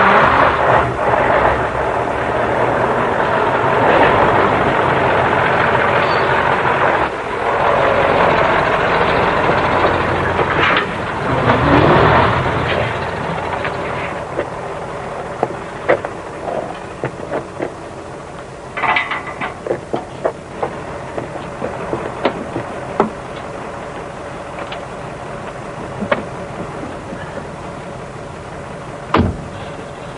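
Heavy lorry diesel engines running in a truck yard, loud for about the first fourteen seconds with a pitch that dips and rises near twelve seconds in. The engine noise then settles into a quieter steady hum broken by scattered knocks and clicks.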